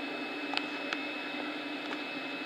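Steady electrical hum with a faint high whine, from a Class 450 Desiro electric multiple unit standing at the platform, with a few faint clicks.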